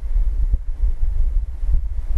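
Low, fluctuating rumble on the microphone, like wind noise, with no speech. Two faint knocks come about half a second in and near the end.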